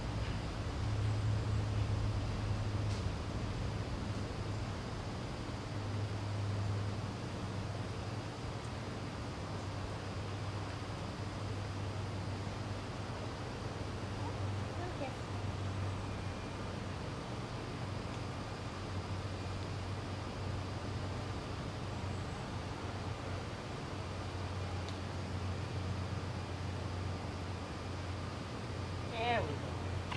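Steady low mechanical hum throughout, with a few faint brief squeaks about halfway through and a short rising cry just before the end.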